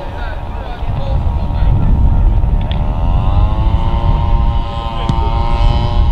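An engine's hum rising in pitch about halfway through, then holding steady, over a heavy low rumble.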